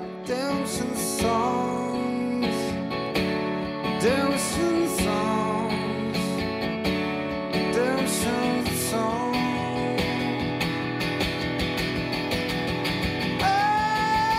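Steel-string acoustic guitar strummed in a steady rhythm, playing chords without words. Near the end a man's voice comes in with a long held sung note.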